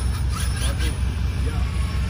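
Brushless-converted Rovan F5 1/5-scale RC car driving some distance off, its electric motor giving a faint whine that rises and falls early on. Under it runs a louder, steady, evenly pulsing low rumble.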